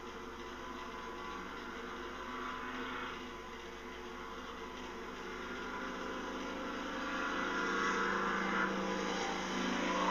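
A steady mechanical hum, like a motor running, with a rushing noise that grows louder in the second half.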